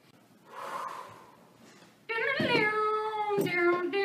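Drawn-out, meow-like calls start about two seconds in, held and sliding in pitch, after a short faint hiss.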